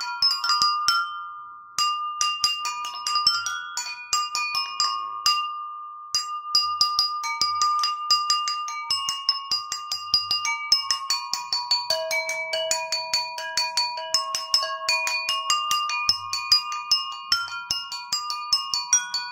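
Jal tarang: a row of porcelain bowls tuned by the water in them, struck with thin sticks in a quick, continuous run of ringing bell-like notes. The playing breaks off briefly about a second and a half in.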